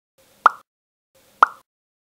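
Two identical short pop sound effects about a second apart, marking a paintbrush and then a palette popping into a stop-motion figure's hands.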